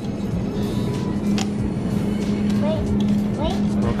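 Steady low hum of supermarket freezer cases and store background noise, with a young child's short vocal sounds about two-thirds of the way through.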